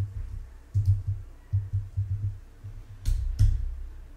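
Typing on a computer keyboard: irregular dull key thumps, with two sharper clicks about three seconds in.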